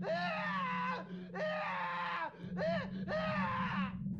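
A girl screaming, about four high-pitched cries in a row with pitch that arches and falls, over a steady low hum.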